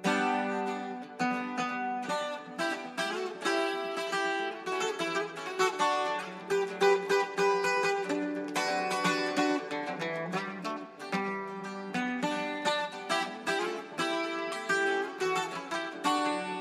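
Instrumental intro of a regional Mexican song played on plucked strings: a quick picked melody, note after note, over held lower notes, with no singing yet.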